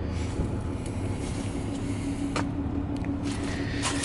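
Steady low rumble of the Grand Caravan's 3.6-litre V6 idling, heard from the open rear hatch. A faint steady hum joins about a second and a half in, and a couple of light clicks sound near the middle and the end.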